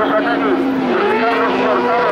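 Carcross racing buggies' engines running on the track, holding fairly steady pitches that dip briefly about a second in, with people talking over them.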